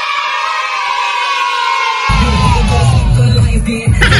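A long drawn-out cheering shout of cartoon Minion voices, held and sagging in pitch at the end, then dance music with a heavy bass beat comes in about halfway.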